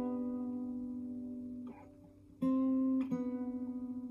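Fingerstyle steel-string acoustic guitar. A plucked chord rings and slowly fades, then after a short lull a new chord is plucked about two and a half seconds in, with another note struck about half a second later and left ringing.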